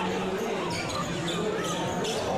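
Basketball being dribbled on a hardwood gym floor during a game, with a faint steady low tone underneath.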